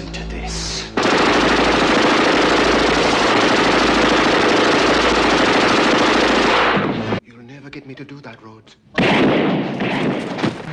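Sustained automatic gunfire from a film soundtrack: one continuous rattling burst starts about a second in and runs for nearly six seconds before cutting off abruptly. After a quieter stretch, another loud burst of sound comes about nine seconds in.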